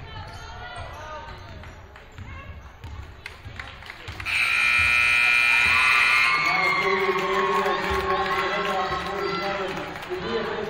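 Basketball shoes squeaking on the hardwood and the ball bouncing as the last seconds of the period run out. Then the scoreboard buzzer sounds, loud and steady for about two seconds starting just past four seconds in, as the game clock hits zero and ends the period. Crowd voices follow.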